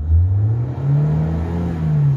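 Renault Logan 1.6 petrol engine being revved. Its pitch climbs for about a second and a half and starts to drop near the end. The engine is running smoothly again after a no-start caused by adulterated fuel, clogged injectors and a faulty ignition coil connector.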